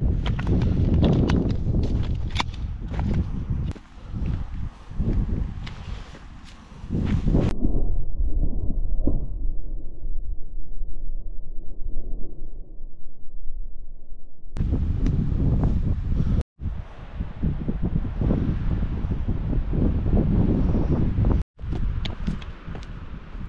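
Footsteps crunching over dry twigs and stones while wind rumbles on the microphone. For several seconds in the middle there is only a muffled low wind rumble, then the crunching steps come back, cut off briefly twice near the end.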